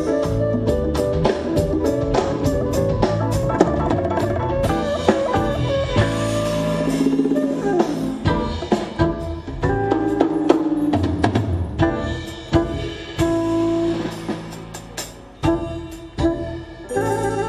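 A live band plays jazz-leaning music: grand piano over a steady beat from drum kit and hand percussion. It thins out and drops in level near the end.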